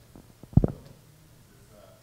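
A short cluster of low, heavy thuds a little over half a second in, the loudest sound here, with a few faint taps around it.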